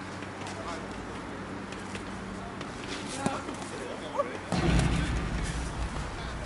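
Outdoor softball-field ambience with faint distant voices of players, a single sharp knock about three seconds in, and a loud burst of low rumble on the microphone about a second later.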